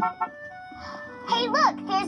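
Television soundtrack of a children's show, recorded off the TV speaker: background music. About a second and a half in, a steady musical chord starts under a child's excited voice.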